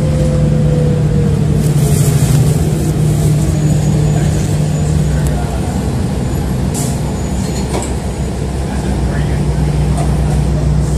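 Ride inside a city transit bus: the bus's engine and drivetrain run steadily, with a whine that falls in pitch over the first couple of seconds. Short hisses come about two seconds in and again near seven seconds.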